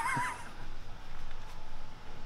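Used oil running from a car's drain plug hole in a thin steady stream and splashing into a plastic drain pan, a steady pouring sound; a short wavering vocal sound comes at the very start.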